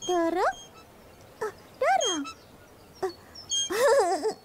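A high, childlike voice giving three wordless cries, each rising and then falling in pitch, with short high bird chirps between them.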